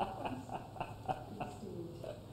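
Soft laughter and low, indistinct voices from a few people exchanging greetings, with a quick run of short laughing sounds in the first second or so.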